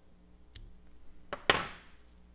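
Fly-tying scissors snipping off the waste butts of turkey wing slips: a faint click about half a second in, then two sharp snips close together near the end, the second the loudest.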